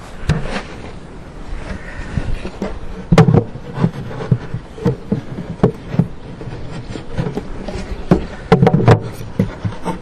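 Irregular knocks and bumps from handling wooden beehive equipment, the loudest about three seconds in and a cluster near the end.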